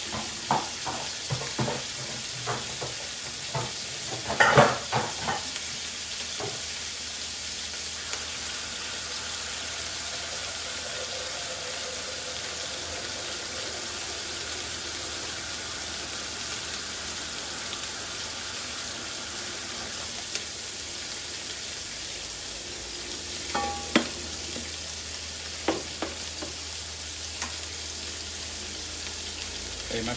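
Prawns sizzling steadily in a hot grill pan. A few clicks and knocks come in the first several seconds, the loudest about four and a half seconds in, and a few more come about two-thirds of the way through.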